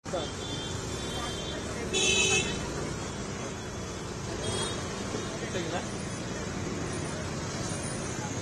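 Street traffic noise with a vehicle horn sounding loudly about two seconds in, and a shorter honk a couple of seconds later.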